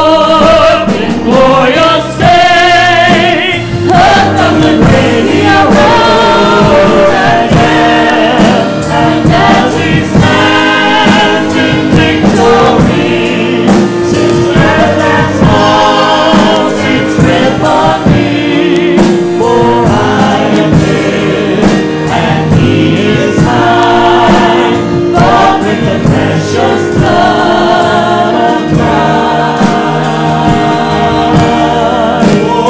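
Gospel worship song sung by a small mixed group of voices, one man and three women, in harmony through microphones, with Casio Privia digital piano accompaniment. The singing is continuous and steady throughout, with sustained notes.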